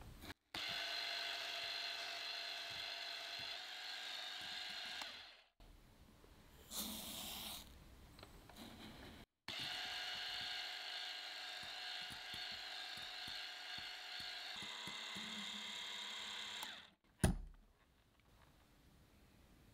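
Electric hand mixer whipping egg whites and sugar into meringue in a glass bowl, its motor running with a steady whine in two long stretches with a pause between them. A single sharp knock near the end is the loudest sound.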